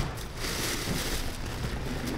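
Plastic mailer bag and tissue paper rustling and crinkling as a new pair of sneakers is unwrapped and lifted out.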